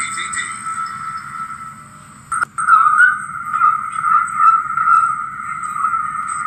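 TV programme audio played through a television's speaker and picked up by a phone, thin and distorted; it dips, a click comes a little over two seconds in, and it comes back louder.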